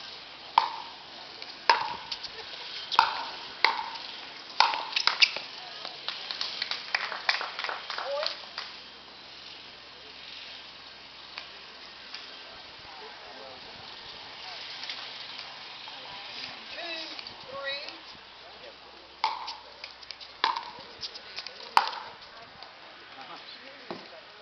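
Pickleball paddles hitting a plastic ball in a rally: sharp hits, each with a short ring, about six over the first five seconds, then three more near the end about a second apart.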